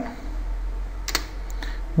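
Computer keyboard keys tapped a few times about a second in, over a low steady hum.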